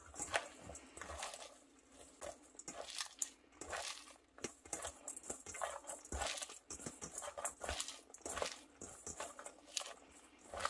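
Hands tossing and squeezing finely shredded cabbage in a stainless steel bowl: irregular crisp rustling and crunching, with occasional light clicks.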